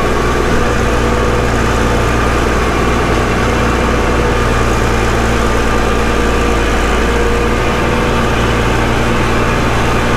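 Gleaner F combine running steadily: a loud, even engine and machinery drone with a constant low hum.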